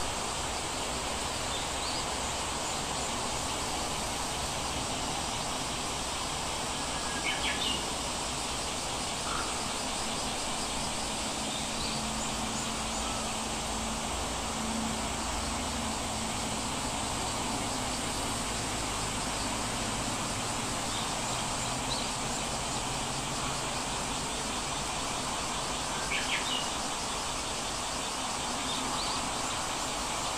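Steady background hiss with a few short, high bird chirps; the two clearest come about seven seconds in and again near the end.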